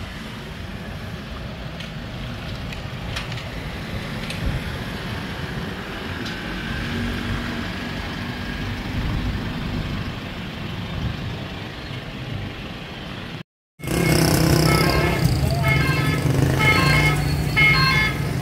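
Steady low rumble of street traffic. About 13 seconds in, it cuts off abruptly and a louder sound with several steady tones starts.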